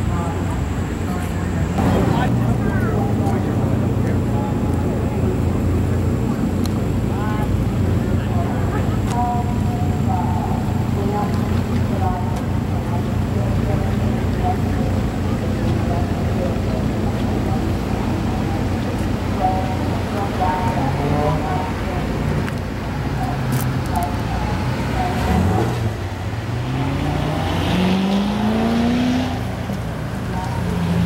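Background chatter of people over a steady low engine rumble. Near the end, a car engine revs up, its pitch rising several times in succession.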